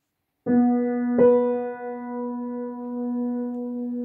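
Upright piano playing an octave as a melodic interval: a lower note struck about half a second in, then the note an octave above about 1.2 s in, both held and ringing on.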